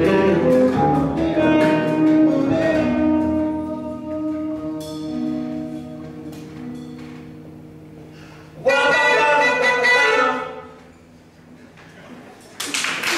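Live small jazz combo of saxophone, acoustic guitar, double bass, drums and singer playing the close of a song. The held notes thin out and fade, then the band plays a loud final chord about nine seconds in that rings briefly and dies away.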